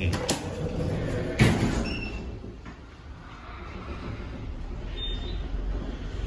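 Elevator car button click, then the car doors closing with a knock about a second and a half in, followed by the Fujitec traction elevator car setting off with a low steady hum that grows toward the end.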